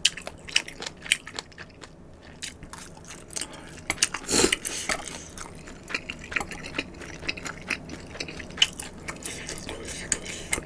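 Close-miked eating of spicy noodles: wet chewing and smacking mouth sounds made up of many short, sharp clicks, with one louder, longer burst about four and a half seconds in. Metal chopsticks are picking food off a wooden board.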